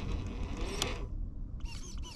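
Axial SCX10 III RC crawler driving slowly: its electric motor and gears whine, shifting in pitch, with creaks and a sharp click from the drivetrain.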